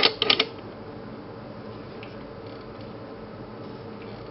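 A brief bit of voice at the very start, then steady background hum with a faint low tone, the room or equipment noise around the microscope.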